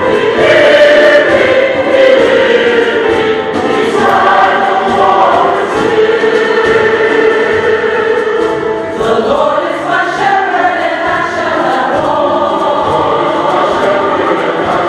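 Mixed church choir of men and women singing a gospel piece together, holding long sustained chords that shift every few seconds.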